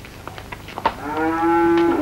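A calf mooing once: a single long, steady-pitched call that starts about a second in.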